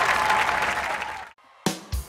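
Studio audience applauding and cheering, cut off abruptly about a second in. After a brief gap, end-card music starts with a couple of sharp hits.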